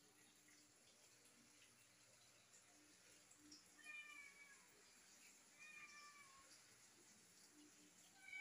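Two faint, high meows from a pet cat, each under a second and falling slightly in pitch, about four and six seconds in; otherwise near silence.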